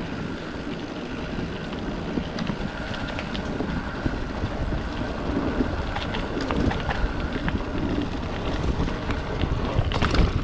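Wind buffeting the microphone over the rumble of a Trek Marlin 7 mountain bike's tyres rolling on a dirt trail, with scattered light clicks and rattles from the bike.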